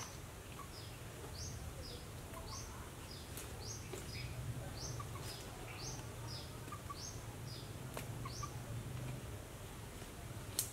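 A bird calling over and over: short, high chirps in an even series, about two a second, over a faint low steady hum.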